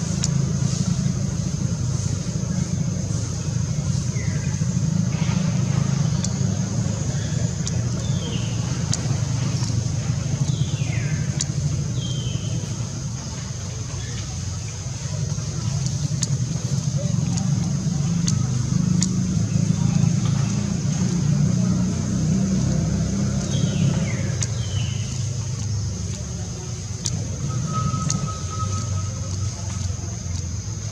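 Outdoor ambience: a steady low rumble under a constant high-pitched hum. A few short falling chirps come through, several in the first half and two more around 24 seconds in, and a brief steady whistle-like tone sounds near the end.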